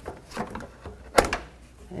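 Plastic windshield cowl panel being handled and worked loose by hand: a few light knocks and rattles, then one sharp click a little over a second in.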